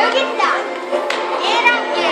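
Children's high voices chattering and calling out over steady ambient background music.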